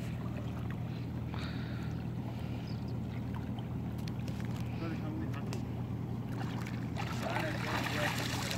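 Men wading and groping by hand in shallow muddy river water, with water sloshing and a splash near the end, over a steady low hum and faint voices.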